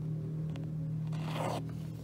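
Embroidery floss pulled through aida cloth with one short rasping draw about a second and a half in, with a few light clicks of the needle against the fabric. A steady low hum runs underneath.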